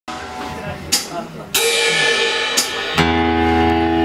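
Live band sound: a cymbal crash about a second and a half in, ringing and fading, then a keyboard chord held steadily from about three seconds in.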